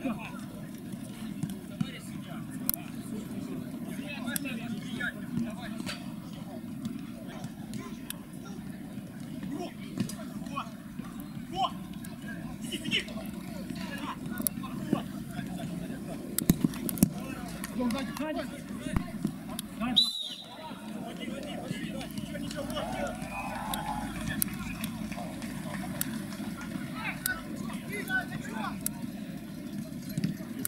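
Sounds of a small-sided football match on an artificial pitch: players' scattered shouts and calls, with sharp knocks of the ball being kicked now and then. A short break about two-thirds of the way through.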